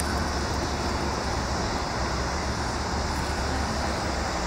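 Steady outdoor road-traffic noise: an even low rumble with a hiss above it, unchanging throughout.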